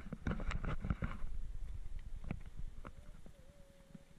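Footsteps on a rocky dirt trail: irregular steps and knocks over a low rumble of wind on the microphone, thinning out in the second half. A faint thin wavering tone near the end.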